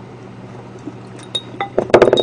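Chopsticks clinking against dishes and a plate, a few light clicks in the second half and the loudest near the end, over a low steady hum.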